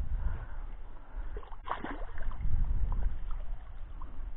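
A hooked ide splashing briefly at the water's surface as it is played toward the boat, about halfway through, over a steady low rumble on the microphone.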